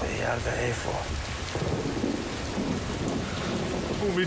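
Steady rain with a low rumble of thunder.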